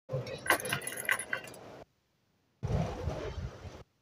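Sharp clicks and clinks with some rustling, broken into two short fragments that each cut off suddenly into dead silence.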